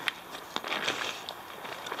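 Rustling and crinkling of backpack fabric as a hand rummages inside the top of a pack, with a sharp click just after the start.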